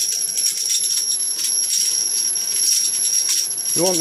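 High-voltage arc crackling continuously between two terminals of a transformer driven by an IGBT half bridge, over a steady high-pitched whine from the drive. A voice comes in at the very end.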